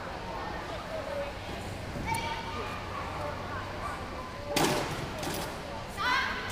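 Faint, distant voices echoing in a large indoor hall, with one sharp bang about four and a half seconds in.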